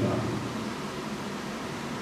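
A pause in a man's speech, filled by a steady, even background hiss; his last word trails off at the very start.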